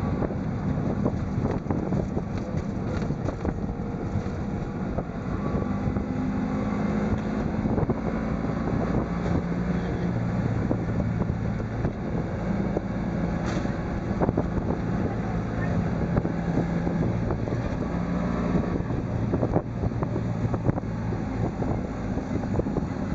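Auto rickshaw's small single-cylinder engine running under way, its pitch stepping up and down as it speeds up and slows. Road noise and wind come in through the open sides, with wind buffeting the microphone.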